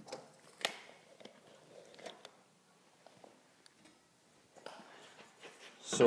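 Faint, sparse clicks and taps of hand tools being handled against a drywall wall: a tape measure and pencil marking out a square, with some light rustling near the end.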